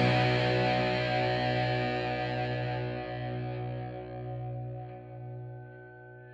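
The band's final distorted electric-guitar chord ringing out at the end of a punk rock song, held with no new notes and steadily fading away.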